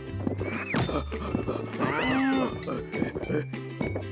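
Cartoon background music with a steady beat, over which an animated cow gives a bending, arching moo about two seconds in, after a shorter rising call near the start.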